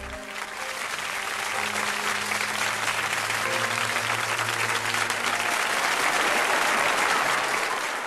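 Audience applause at the end of a live pop-rock song, swelling and loudest near the end, with the band's last low note held under it until about five seconds in.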